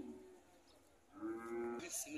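Zebu cattle in a corral mooing: a low call fading out at the start, then another long, steady moo starting about a second in.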